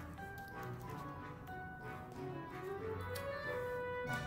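Soft background music with slow, held notes.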